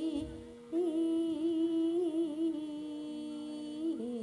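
A woman singing through a microphone in long held notes with a wide, wavering vibrato, with a short break about half a second in.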